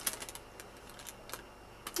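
Thin paper craft bag being handled and turned over in the hands: a few short faint clicks and crinkles, a little cluster just after the start, one more a little past the middle and another near the end.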